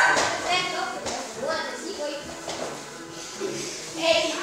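Indistinct voices talking and calling out in a room, loudest at the very start.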